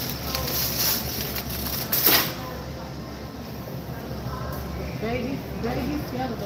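A plastic-wrapped case of bottled water is handled and dropped into a shopping cart, with one loud thump about two seconds in.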